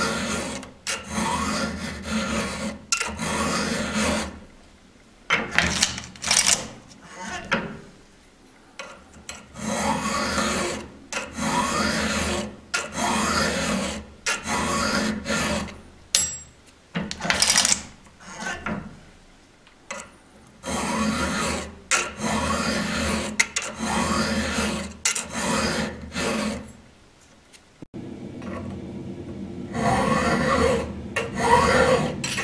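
Vallorbe double chisel bit file rasping across the cutter of a square-ground chisel saw chain, hand-filed in short push strokes about one a second, each stroke rising in pitch. The strokes come in runs broken by pauses of a second or two.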